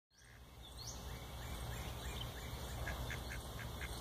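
Mallard ducks quacking faintly over a steady low rumble of background noise, ending in a quick series of about five short quacks.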